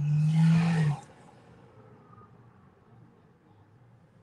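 A person's breathy, steady-pitched groan, about a second long, right at the start; then only a faint, steady background hum.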